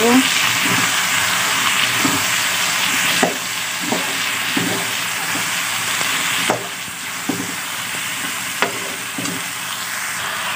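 Cut green beans and potato pieces sizzling in hot oil in a pan as a metal spoon stirs them, with occasional clicks and scrapes of the spoon against the pan. The sizzle eases a little about three seconds in and again past six seconds.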